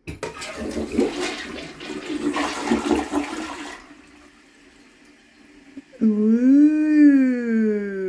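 A newly installed toilet's first flush: the lever clicks and water rushes into the bowl for about four seconds, then drops to a faint hiss as the tank refills. Near the end comes a long drawn-out voice that rises and then falls in pitch.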